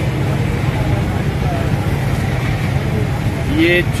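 Steady low rumble of street traffic, with faint voices in the background.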